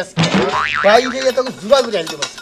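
A man laughing, a long run of rising and falling laughs.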